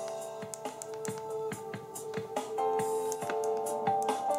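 Music playing through a small transparent Bluetooth speaker with ambient lighting: sustained synth-like notes over a steady beat of about two strokes a second.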